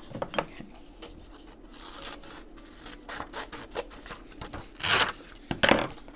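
A sheet of paper rubbed, folded and creased by hand, then torn along the fold in two short, loud rips near the end.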